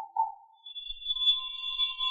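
A short note fades out, then about half a second in a faint, steady, high-pitched ringing tone begins with a weaker lower tone beneath it, held without decaying.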